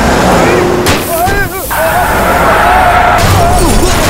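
Film car-crash sound effects: a sharp crash just before a second in as a car is struck and overturned, over vehicle rumble, with men's voices yelling, one held cry near the middle.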